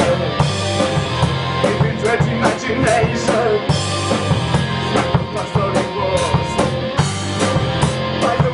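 A band playing live, with the drum kit loudest: a steady beat of drum and cymbal hits over the rest of the band.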